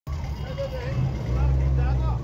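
Low engine and road rumble heard from inside a moving car, growing louder about a second in, with faint voices from the street.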